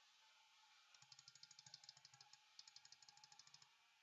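Faint, rapid computer mouse clicks, about eight a second in two runs with a short pause between them: repeated presses on the threshold spinner's up arrow, stepping it to 100%.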